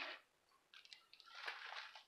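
Faint rustling and crinkling of a comic book's plastic sleeve being handled as one bagged comic is swapped for the next: a short rustle at the start, then a longer crinkling about a second in.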